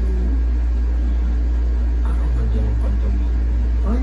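A steady low hum, with faint voices about two seconds in.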